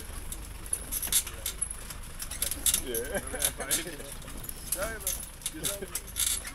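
A vehicle driving over a rough, rocky dirt track: a steady low engine and road rumble with frequent sharp rattles and knocks from the body jolting over stones.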